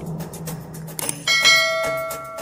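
Intro music with a beat, then a little past a second in a click followed by a bell ding that rings on: a subscribe-button and notification-bell sound effect.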